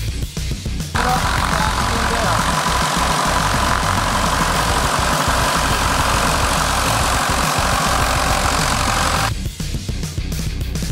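Rock music plays throughout. From about a second in until shortly before the end, a loud steady engine noise with a constant whine sits over the music, starting and stopping abruptly.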